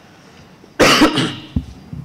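A man coughs once into a close microphone, a short sharp burst about a second in, followed by a soft low knock.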